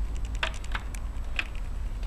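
Light clicks and taps of brass rifle cases being handled in a plastic loading block, with a few sharper clicks about half a second, three quarters of a second and a second and a half in, over a low steady hum.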